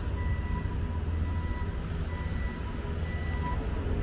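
A vehicle's reversing alarm beeping repeatedly, a thin high tone, over a steady low rumble of engines and street traffic.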